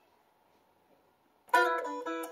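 Gibson ES-335 guitar playing blues: a deliberate rest of near silence, then a phrase of picked notes comes in sharply about a second and a half in.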